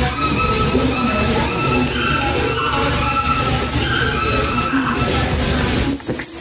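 Loud steady rushing noise with faint wavering tones over it, cutting in and out abruptly.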